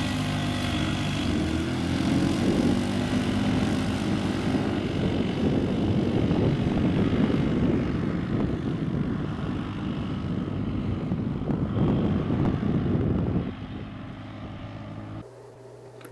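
Can-Am Outlander ATV engine revving up as it pulls away, then running hard at high revs while climbing a steep sand dune, fading down near the end.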